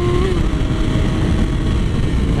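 Wind rushing over the camera microphone at road speed, with the 2007 Yamaha R6's inline-four engine running underneath in fifth gear. The engine's steady note climbs slightly, then drops away about a quarter second in, leaving mostly wind noise.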